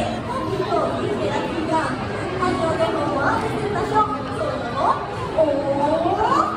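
Several voices chattering and calling out over one another, some of them high-pitched.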